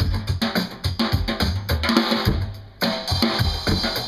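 Drum kit played with sticks in a busy, irregular run of quick hits on drums and bass drum. The playing thins out briefly a little before the end, then comes back in with a sudden loud hit and a bright crash that rings on.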